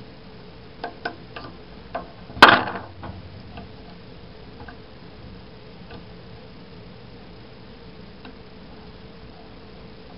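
Small clicks of hard plastic and metal parts being pried and handled inside an opened oscillating multitool's housing, with one much louder sharp snap about two and a half seconds in. After that only a few faint ticks.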